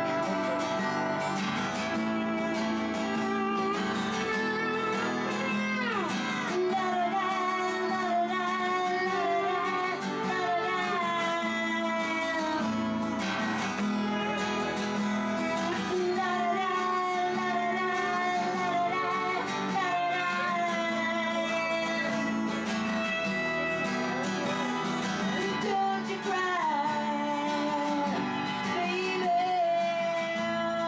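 A woman singing over strummed acoustic guitar, with a lap steel guitar played with a slide alongside. Two long downward slides come through, about six seconds in and near the end.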